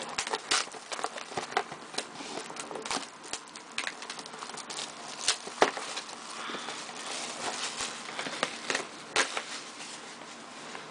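Shrink-wrapped cardboard trading-card boxes being handled and shifted: plastic wrap crinkling with many light, irregular taps and clicks, one sharper knock about halfway through.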